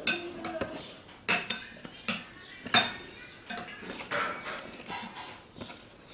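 A hand mixing crispy-fry powder and water into batter in a plastic tub: irregular wet scrapes and squishes, with sharp clicks and knocks from the tub about half a dozen times.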